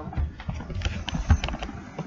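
Handling noise from a handheld phone being moved about: irregular clicks and low thumps, the loudest a little past the middle.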